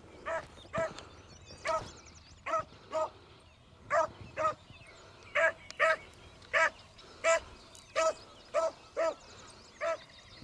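A beagle baying steadily as it trails a rabbit by scent: short, same-pitched bays repeated about one and a half times a second, the sign of a hound on the rabbit's track.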